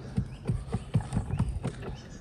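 A quick run of light, irregular knocks, about four or five a second, as the metal frame of a lighthouse lens is handled and its bolts worked by hand.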